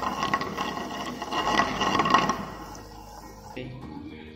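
Butter sizzling and crackling as it melts in a non-stick frying pan, loudest in the first two seconds and then dying down.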